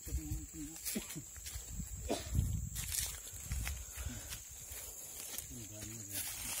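Footsteps on a dirt path through grass and leaf litter, with the rustle of a carried plastic sack and low thuds from walking.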